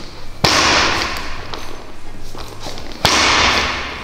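A barbell loaded with bumper plates is worked through power clean reps, giving two sudden hits about two and a half seconds apart. Each hit rattles away over about a second.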